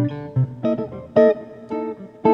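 Solo archtop jazz guitar playing: a low bass note, then a run of short plucked chord stabs, the loudest about a second in.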